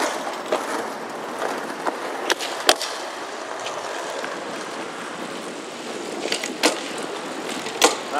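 Road bike rolling on pavement, heard from a helmet camera: steady tyre and wind noise with a few sharp clicks or knocks, the clearest near the middle and toward the end.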